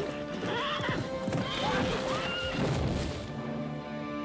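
Horses whinnying several times, high wavering calls through the first three seconds, with hoofbeats beneath, over film score music.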